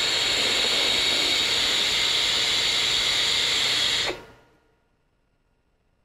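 A long drag on a Horizon Tech Arctic sub-ohm tank with a bottom turbo dual coil, fired at 40 watts: a steady, airy hiss of air pulled through its wide-open airflow. It lasts about four seconds, then stops suddenly.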